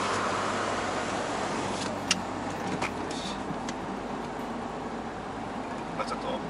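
Wind rushing in through a partly opened side window of a moving Suzuki Every kei van, mixed with road noise, with a few sharp ticks a couple of seconds in.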